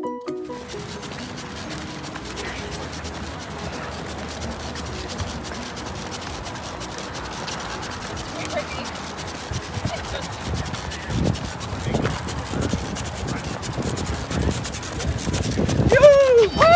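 Steady outdoor noise along a road race course with faint voices, and irregular low thumps from about halfway that grow louder near the end.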